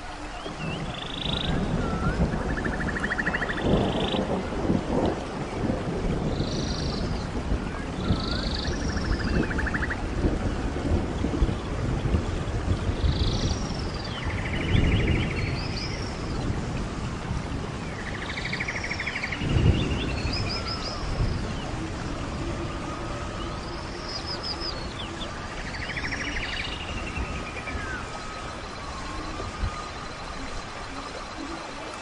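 Rainforest soundscape: a steady hiss of rain with low rumbles of thunder three times, and birds giving short, repeated calls over it.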